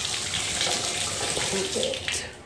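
Water running from a chrome bathtub spout into the tub as the faucet is turned on to test it, a steady rushing splash that cuts off suddenly near the end when the handle is shut.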